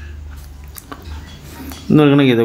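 A few faint taps of a stylus on a tablet's glass screen over a steady low hum, as handwritten working is erased; a man's voice starts at the very end.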